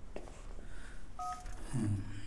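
A single short phone keypad beep, the two-note dual tone of a DTMF key press, about a second in. A short low voice sound, like a breath or grunt, follows near the end.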